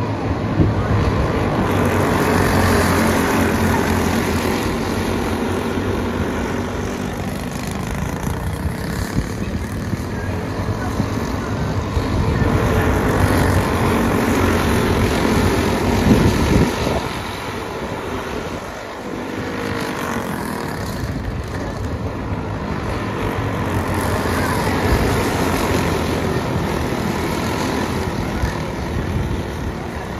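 Engines of a pack of racing go-karts running hard around a dirt oval, the sound swelling and fading as the field circles. About halfway through the sound peaks and drops in pitch as karts pass close by.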